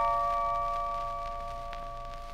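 The closing bell-like chord of a worn 78 rpm record, held on several steady notes and fading away, over a faint low hum and surface hiss. One click sounds near the end.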